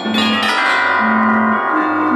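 Barrel organ holding low notes under self-built carillons of tuned metal bars and copper tubes struck by wooden hammers. A chord is struck about half a second in and rings on, fading slowly.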